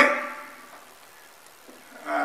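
A man's voice finishing a word in a small room, the sound fading over about half a second, followed by quiet room tone.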